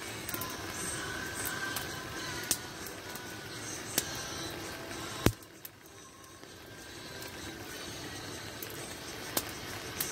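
Campfire crackling, with a few sharp pops spread through, over faint background music.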